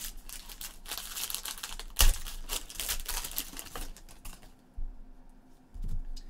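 Foil wrapper of a trading card pack being crinkled and torn open: a dense run of crackling clicks with one sharp snap about two seconds in, dying down after about four seconds.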